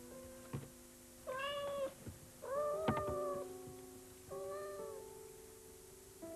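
A cat meowing three times, each call under a second, over soft, sparse instrumental music.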